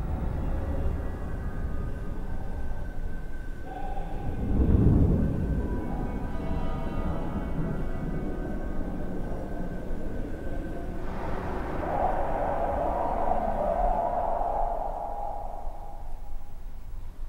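Dark ambient drone from a horror short's soundtrack: a steady low hum with faint held tones, a deep swell about five seconds in, and a wavering mid-pitched sound that builds over it from about eleven seconds on.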